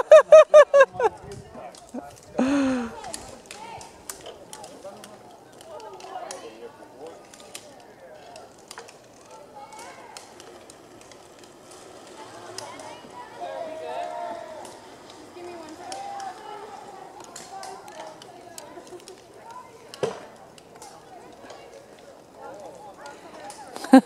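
Voices of people talking and calling at a distance, after a short, loud, rapidly pulsed vocal burst and a falling call in the first few seconds.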